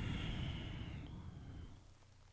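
A person's long, slow breath out, fading away over about two seconds.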